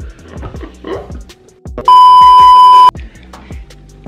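Background music with a steady beat, cut by a loud, steady electronic bleep about a second long near the middle.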